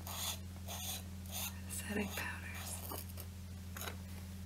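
Plastic screw-top lid of a MAC Prep+Prime loose powder jar being twisted open in several short, scratchy turns about half a second apart, over a steady low electrical hum.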